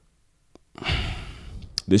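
Near silence, then a man's audible sigh-like breath into a close microphone, loud at first and fading over about a second, just before he speaks again.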